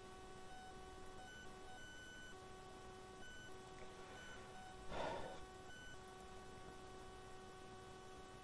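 Very quiet room tone with a faint electrical hum that keeps cutting in and out. A brief soft rustle comes about five seconds in.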